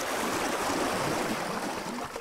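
Steady rushing noise, like flowing water.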